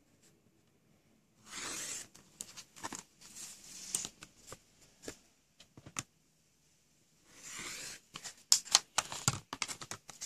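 Rotary cutter blade slicing through layered cotton fabric along the edge of an acrylic ruler on a cutting mat: two strokes about six seconds apart, each under a second long. Light clicks and taps of the ruler and fabric being shifted fall between and after the cuts.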